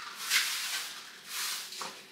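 Straw broom sweeping a linoleum floor: two brushing swishes of the bristles, about a third of a second in and again past the middle.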